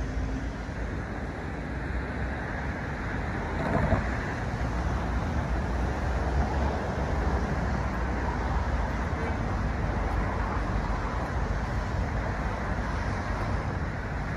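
Steady road traffic noise, a continuous low rumble with no distinct vehicles, with one short louder noise just before four seconds in.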